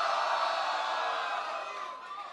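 Audience cheering and shouting together, a crowd vote by noise at a rap battle; it is loudest early and tails off toward the end.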